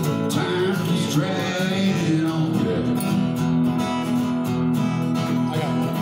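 Acoustic guitar strummed in a country shuffle, an instrumental stretch of the song with held notes and no singing.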